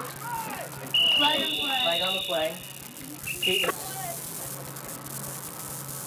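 Referee's whistle blowing the play dead: one long steady blast of about a second and a half, then a short second blast. Shouting voices run under the first blast.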